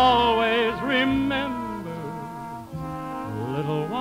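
Slow orchestral ballad music, a melody of long held notes with a wavering vibrato over band accompaniment.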